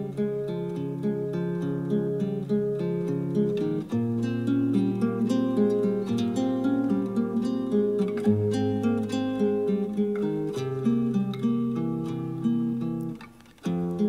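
Instrumental intro of a Flemish folk song: acoustic guitar picking a melody over sustained bass notes, with a brief pause near the end.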